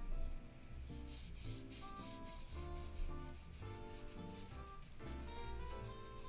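Colored pencil shading back and forth on paper, a quick run of scratchy rubbing strokes, several a second. Quiet background music with a simple melody plays underneath.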